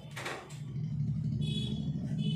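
Soft background music of steady held low drone tones, with high sustained notes coming in about halfway through. A brief rush of noise comes just after the start.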